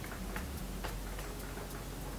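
Faint light ticks, roughly two a second, over a low steady hum.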